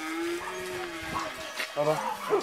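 A man's voice holding one drawn-out vowel for about a second, its pitch rising and falling slightly, then trailing off.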